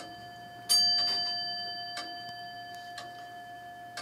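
A roughly 225-year-old longcase (grandfather) clock striking the hour on its bell: one stroke about two-thirds of a second in, the last of the nine, ringing on and slowly dying away. The clock ticks faintly underneath, about once a second.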